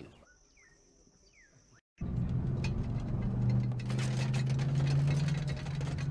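A faint high steady tone with a few short falling chirps. About two seconds in, a sudden cut brings in a vehicle engine running steadily while driving, heard from on board with road noise.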